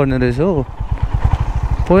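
Motorcycle engine running at low revs with an even low putter, under a man's voice singing a drawn-out, gliding tune for the first half-second and again near the end.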